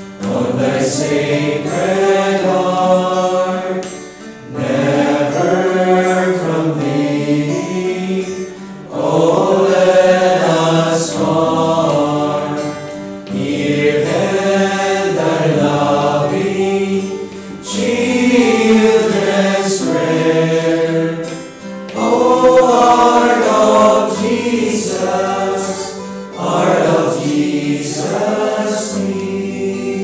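Voices singing a slow hymn, phrase by phrase, each phrase about four seconds long with a short break between them.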